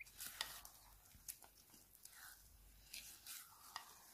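Silicone spatula stirring a gritty sugar-and-coffee scrub in a glass bowl: faint, irregular scrapes and light clicks against the glass.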